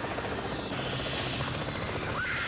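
Helicopter rotor blades chopping at a fast, even beat, as a sound effect in a TV commercial soundtrack.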